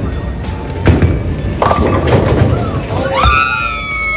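A bowling ball rolling down a wooden lane and crashing into the pins about a second in. It is followed by high-pitched shrieks of celebration, over background music.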